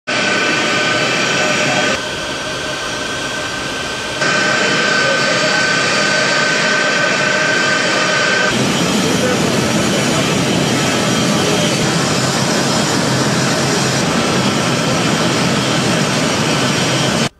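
Jet airliner's engines running steadily: a loud rushing noise, with a high steady whine for a few seconds in the middle, the sound shifting abruptly a few times.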